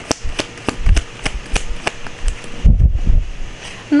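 A deck of tarot cards being shuffled by hand: a steady run of sharp card clicks, about three a second. Gusts of wind rumble on the microphone about a second in and again near three seconds.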